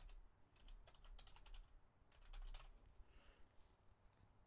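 Faint typing on a computer keyboard: a few short runs of key clicks as a word is typed.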